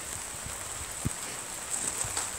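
Steady rain falling on a gravel garden and its plant pots and leaves, with one soft knock about halfway through.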